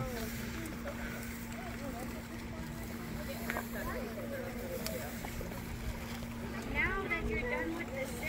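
Water running gently in a wooden gem-mining sluice trough under a steady low hum, with faint voices talking in the background now and then.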